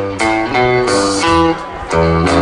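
A guitar playing a short run of single notes and chords through the stage PA, each note starting sharply and changing every few tenths of a second, over a steady low note underneath.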